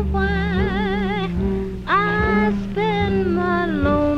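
Tenor saxophone playing a slow ballad melody with a wide, wavering vibrato over a jazz band's accompaniment, in an old 1941 live recording.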